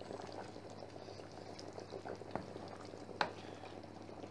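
Sambal buncis (green beans and chicken in chili sauce) bubbling and spitting softly in a stainless steel pot as it cooks down until dry, with a wooden spoon stirring through it and knocking the pot twice, about two and a half and three seconds in.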